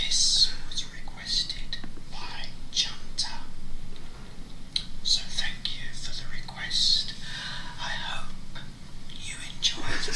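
A man whispering softly into a microphone, ASMR-style, in short breathy phrases.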